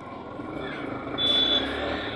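Road and traffic noise heard from a moving motorcycle on a busy street, with a low rumble that grows a little louder in the second half. A short high beep sounds once a little past halfway.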